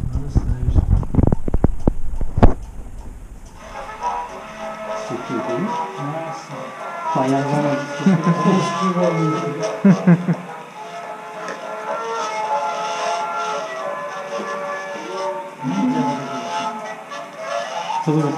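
A hand-cranked gramophone is wound up and started, with clicks and a knock over the first few seconds. Then it plays an old Tatar record: music with a voice-like melody, thin and without bass.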